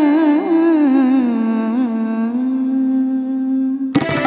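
A solo voice sings a slow, ornamented Carnatic-style melodic line over a steady drone, its pitch sliding and wavering before it settles into one long held note. Hand drums come in abruptly at the very end.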